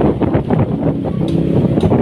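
Vehicle driving slowly along a street, with a low running rumble and wind buffeting the microphone.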